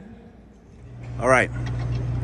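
A tour bus idling with a steady low hum that begins about a second in, and a short spoken word over it.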